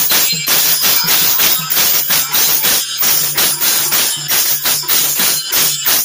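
Loud folk percussion accompaniment with jingling metal strokes in a steady beat, about three strokes a second, over a low sustained tone. It breaks off suddenly at the end.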